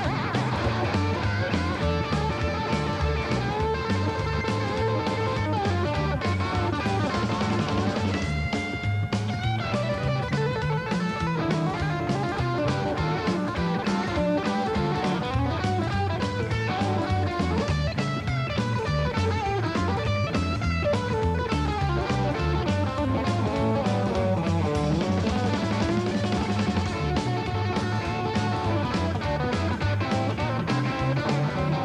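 Rockabilly band playing live: a lead line on a hollow-body electric guitar over upright bass and drums, with no vocals. About eight seconds in the guitar holds a high bent note.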